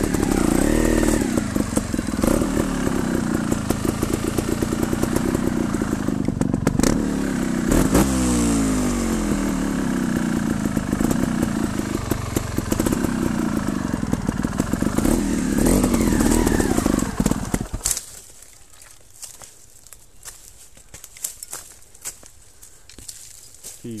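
Trials motorcycle engine revving up and down as the throttle is blipped. Its sound drops away sharply about eighteen seconds in, leaving only faint scattered clicks.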